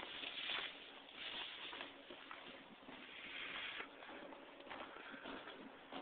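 Shallow river water running over rocks: a steady hiss that swells and fades several times, with a few light clicks.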